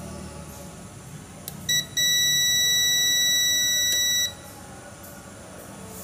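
Digital multimeter's continuity beeper: a brief blip about a second and a half in, then a steady high-pitched beep for a little over two seconds as the probes touch a low-resistance path on the ECM circuit board, which reads about 35.7 ohms.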